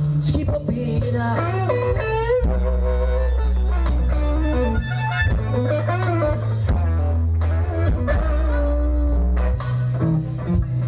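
Live electric blues band playing an instrumental passage: harmonica and electric guitar playing lines with bent, sliding notes over a drum kit and long held bass notes.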